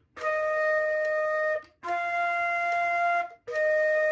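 Concert flute playing three held notes, E-flat, F, E-flat, each about a second and a half long with a short break between them. The middle note is a step higher.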